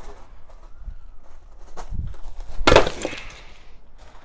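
A large slab of ice dropped onto a concrete path, shattering with one loud crash about two and a half seconds in, followed by a brief scatter of breaking shards.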